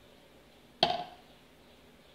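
A single sharp knock with a short ringing tail, a little under a second in.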